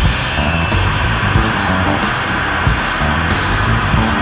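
Loud, dense free-improvised noise rock: distorted electric guitar over bass and drums, played continuously without a break.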